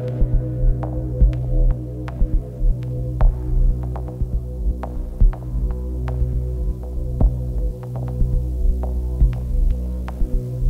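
Electronic ambient score: a low, steady drone of layered sustained tones. Irregular clicks and low thumps are scattered over it, a few each second, with no even rhythm.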